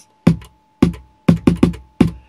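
Vermona Kick Lancet analog kick drum synthesizer triggered by hand, about six kick hits at an uneven pace. Noise is blended into each kick from the noise knob, putting a hiss over the deep thump.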